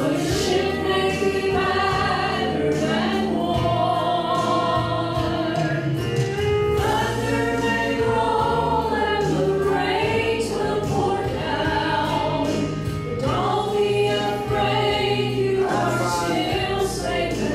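Three women singing a gospel song together in harmony into microphones, with long held notes, over a low bass accompaniment.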